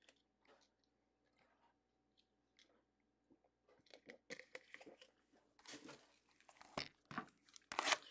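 Faint sounds of someone taking a drink: a quiet stretch, then short scattered clicks and mouth and handling noises from about four seconds in, with a louder brief rustle near the end.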